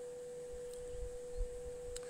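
A steady, unchanging mid-pitched tone, with a faint low rumble in the middle of it.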